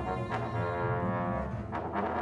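Trombone playing a held, rich-toned note with cello and double bass bowing underneath, in a piece of contemporary chamber music.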